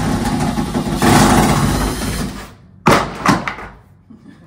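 Cordless power drill running under load as it backs out fasteners, a steady motor whine for about two and a half seconds, then stopping. Two sharp clattering knocks follow about three seconds in.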